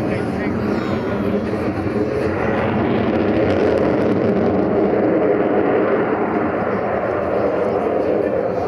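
Jet noise from the F-22 Raptor's twin Pratt & Whitney F119 turbofans as it flies its display overhead: a steady, dense roar that swells slightly midway.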